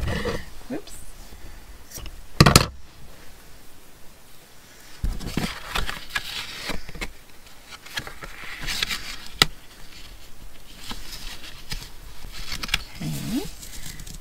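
Hands handling an index card and lace trim on a wooden tabletop: a sharp knock about two and a half seconds in, a lighter click later, and soft rustling and scraping between. A brief murmured voice sound comes near the end.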